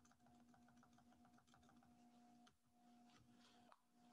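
Near silence: a faint steady electrical hum with very faint clicks from a computer keyboard.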